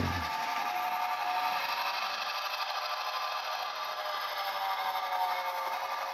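HO scale model train running steadily along the track: an even rasping rumble of the wheels on the rails, with a faint whine from the locomotive's motor.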